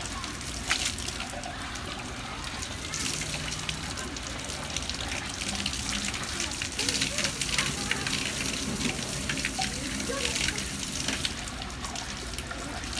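Water running from a spout in a wall and splashing onto concrete as an elephant's trunk dips into the stream, an uneven spattering that gets louder in the second half.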